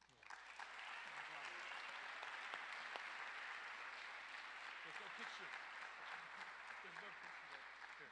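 Audience applauding, starting suddenly and holding steady before easing off near the end, with voices mixed in among the clapping.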